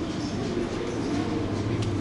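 Steady low hum and rumbling background noise of a large store, with no distinct events.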